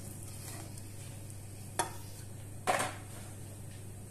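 Wire whisk stirring thick chocolate sponge batter in a glass bowl, faint, with two clinks of the whisk against the glass, about two and three seconds in.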